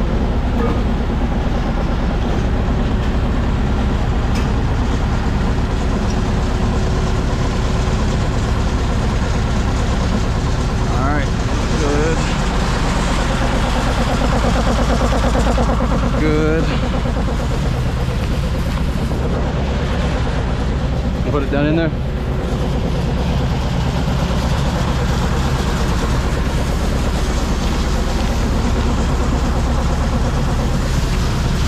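Concrete pump truck's diesel engine and pump running steadily at a constant loud level.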